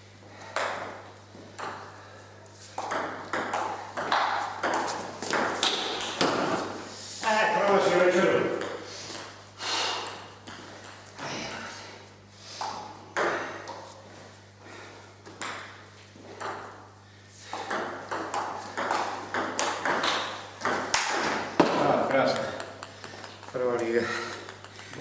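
Table tennis ball clicking back and forth off rubber paddles and the table in a series of rallies, with short pauses between points.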